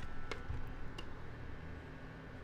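Portable ceramic space heater being tipped over and laid on its side on a desk: a few light clicks and knocks and a soft thump about half a second in, over the faint steady hum of its running fan.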